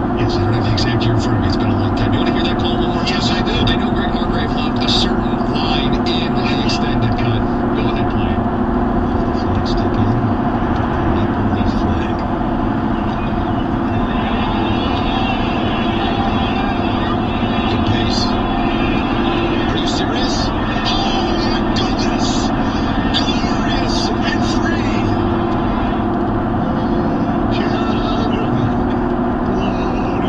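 Steady road and engine noise heard from inside a car cruising on a freeway at about 70–75 mph, a constant drone with no sharp changes.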